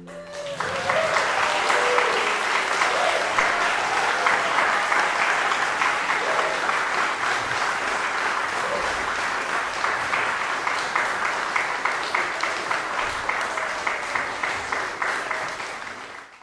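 Audience applauding, starting about half a second in and holding steady, with a few voices calling out in the first seconds.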